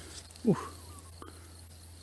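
A man's brief "ooh" exclamation, falling in pitch, about half a second in; otherwise a quiet background with one faint click.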